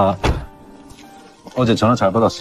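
A man speaking a line of Korean film dialogue in a deep voice, in two short phrases with a quiet pause of about a second between them.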